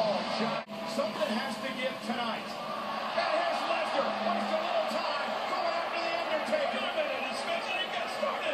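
Indistinct speech from the wrestling broadcast playing in the room, quieter than the nearby talk, over a steady background haze.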